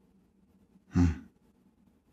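A man's short, breathy "hmm" of acknowledgement about a second in, amid near silence.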